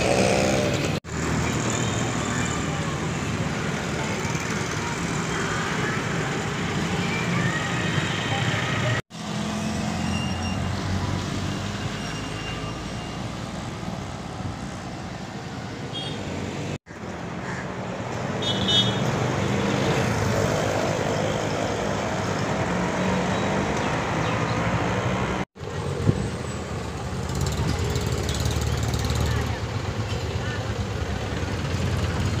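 Street traffic: motorcycles and auto-rickshaws passing with their engines running, and a few short horn toots. The sound drops out briefly three times where clips are joined.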